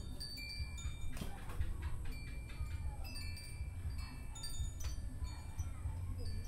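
Chimes ringing: scattered high, thin tones at several different pitches, each starting and fading on its own, over a steady low hum.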